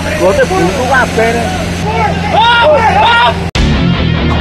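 Men talking over a steady low engine hum, then an abrupt cut about three and a half seconds in to loud music.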